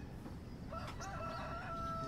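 A rooster crowing faintly, a wavering call that starts under a second in, over low room tone.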